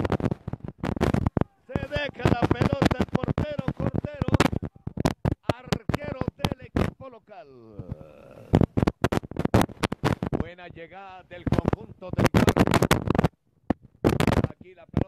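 A man's voice talking, the words unclear, broken up by many crackling clicks and brief dropouts in the audio.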